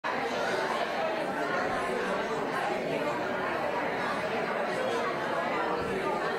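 Indistinct chatter of many people talking at once, a steady blend of overlapping voices with no single voice standing out.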